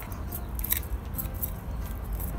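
Bonsai scissors snipping thin Japanese maple twigs, heard as a few short, light clicks spaced irregularly.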